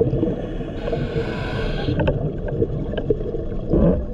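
Underwater sound of scuba regulator breathing heard through a camera housing: a low, continuous rumble of exhaled bubbles, with a hissing inhale about a second in and another burst of bubbles near the end.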